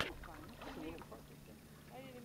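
Indistinct talking from kayakers over kayak paddles dipping in calm water, with a sharp knock at the very start.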